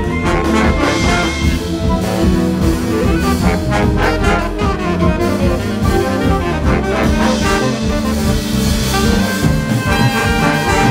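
A jazz big band playing live in an instrumental passage: trumpets, trombones and saxophones over drums, electric bass and keys, with no vocal.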